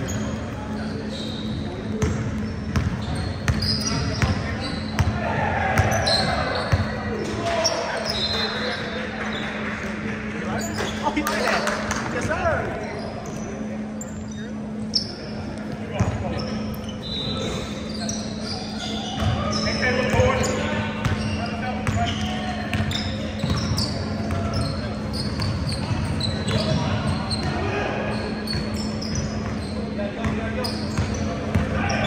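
Live indoor basketball play in a gym: a basketball bouncing on the hardwood court, sneakers squeaking in short high chirps, and players' voices calling out, with a steady low hum underneath.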